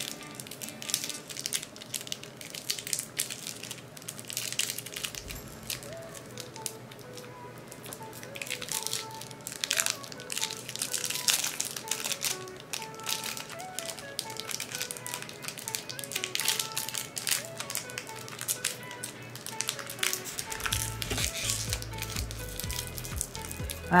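Thin plastic wrapping crinkling in many quick, irregular crackles as it is peeled apart by hand, with quiet background music underneath.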